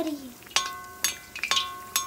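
A metal slotted skimmer clinking against the iron wok four times, about twice a second, each strike ringing briefly with the same tone, as hot oil is scooped over a frying pua.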